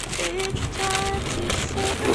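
Tissue paper and a cardboard shoebox rustling and crinkling as a skate shoe is unwrapped and lifted out, a busy crackle of small crinkles.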